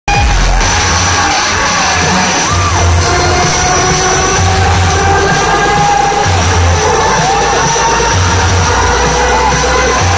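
Loud amplified live music from a concert stage, with heavy bass, over a crowd cheering and shouting, recorded close up on a phone's microphone.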